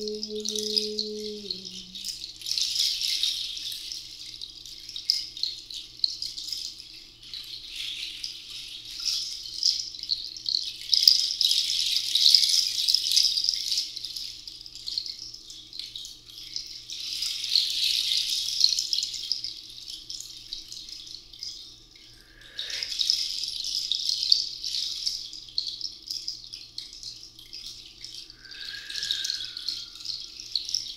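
Handheld rattle shaken in slow swells that rise and fade every few seconds, over a faint steady low drone. A held sung note dies away just after the start.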